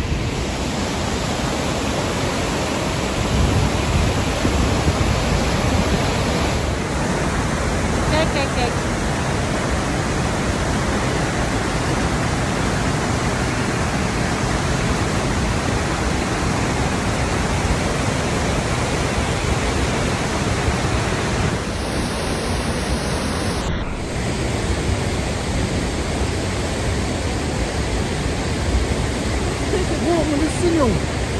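Steady roar of Låtefossen, a large waterfall, close by: an even, unbroken rush of falling water.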